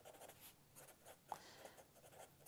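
A black Sharpie marker writing letters on a yellow legal pad: faint short strokes of felt tip on paper, with one sharper tick a little after halfway.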